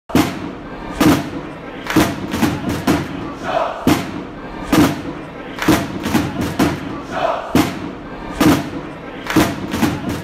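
Intro jingle built on heavy drum hits about once a second, with a crowd shouting over the beat.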